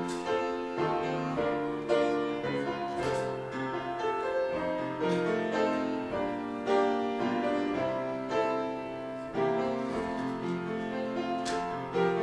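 Grand piano played solo: a continuous flow of ringing notes and chords, each new note struck over the fading ones.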